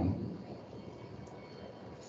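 A pause in speech: faint, steady background room noise, with no distinct event.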